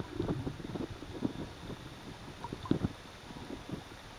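Muffled underwater sound of a camera held submerged in shallow sea water: irregular low knocks and thumps of water moving against the camera, over a faint hiss.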